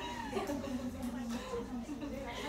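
Indistinct human voices, pitched and gliding, with no words that can be made out.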